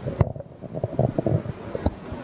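A handheld microphone being handled as it is passed from one panellist to another: an irregular run of bumps, knocks and rustles, with a sharp click near the start and another near the end.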